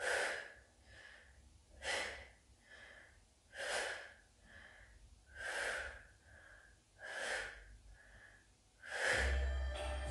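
A woman's forceful out-breaths, six of them about one every two seconds, with softer in-breaths between, as she does crunches. Instrumental hip-hop music with a low bass line comes in near the end.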